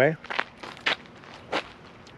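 Footsteps on dry outdoor ground: three steps at an even walking pace.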